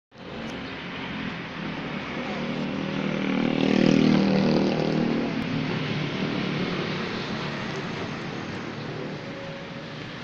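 Vehicle engine running, growing louder about three seconds in and easing off again after about five seconds.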